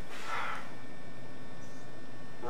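Quiet room tone with steady hiss and hum and no ball strikes, and one soft, brief hiss-like sound about half a second in.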